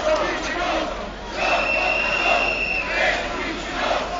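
Large crowd of protesters chanting and shouting in rhythm. A long, steady high whistling tone sounds over them for about a second and a half, starting about a second and a half in.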